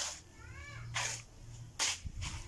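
A cat meows once, a short call that rises and falls, about half a second in. Three short bursts of noise come around it, the loudest near the end.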